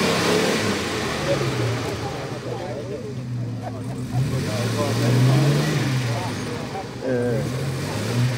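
Mercedes-Benz G-Class engine working under load as the vehicle crawls through deep sand, its revs easing off early on, then rising and falling again about midway. People talk in the background.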